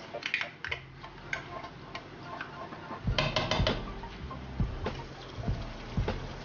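Metal measuring cup and wooden spatula clicking and knocking against a nonstick wok as ketchup is scraped out and stirred into the chicken, with a quick run of taps about three seconds in.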